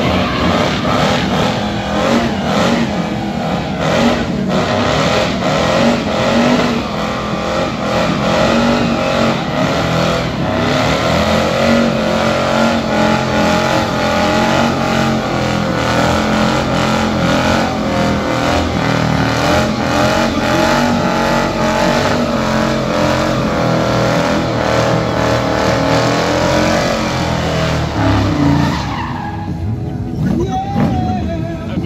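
V8-engined Ford Granada doing a burnout: the engine is held at high revs while the spinning rear tyres squeal and smoke. The wavering pitch holds steady, loud, then eases near the end.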